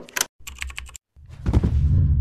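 Logo-sting sound effects for an animated toggle switch: a sharp click, a quick run of keyboard-like clicks, then a deep, loud whoosh that swells up about halfway through.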